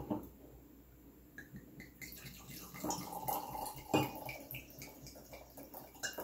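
Wine being poured from a glass bottle into a stemmed wine glass, the liquid splashing into the glass, with light glass clinks and one sharper clink about four seconds in.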